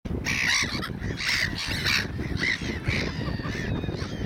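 A flock of black-headed gulls calling: a quick series of harsh cries, one after another, over a steady low rumble.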